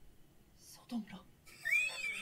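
Mostly quiet room tone, with a man saying a short word about a second in. Near the end a high tone comes in, rising and then wavering, from the anime episode's soundtrack.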